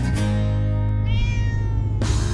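Intro music holding a chord, with a cat giving one drawn-out meow about a second in.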